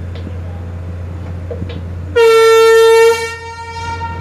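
A ship's horn gives one loud, steady blast of about a second, starting about two seconds in and then fading away, over the low, steady drone of the vessel's engine.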